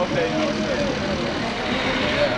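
Minibus engine running close by, a steady noisy drone, with faint voices over it.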